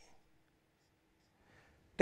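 Near silence, with the faint scratch of a marker pen writing on paper.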